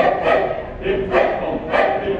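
Mixed choir singing a lively Taiwanese folk song in short, accented syllables, about two a second.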